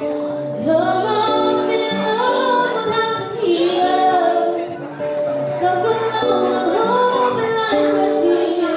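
A girl singing a slow ballad live into a microphone through a PA, with an acoustic guitar played through an amplifier beneath her voice.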